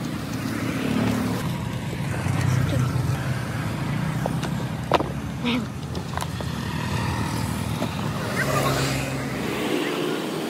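Street traffic: motorbike and car engines passing, with a sharp click about five seconds in.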